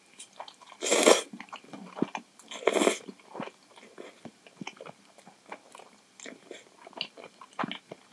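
Instant miso ramen noodles slurped into the mouth in two loud bursts in the first three seconds, then chewed with many short, wet mouth clicks.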